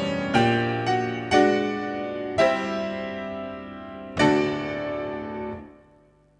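Grand piano playing a slow passage of struck chords, each left to ring and decay. The last chord, about four seconds in, is held and then stops near the end.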